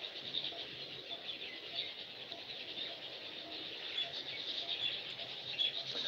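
Faint, continuous high-pitched chirping from small animals in the background.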